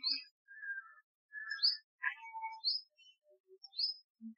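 Birds chirping in the background: a short, high, rising chirp repeated about once a second, with a few scattered lower calls between.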